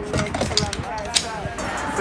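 Indistinct voices talking, with one sharp click a little over a second in.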